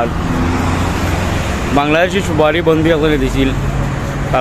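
Steady city street traffic noise with a low engine hum, and a voice speaking briefly from about two seconds in.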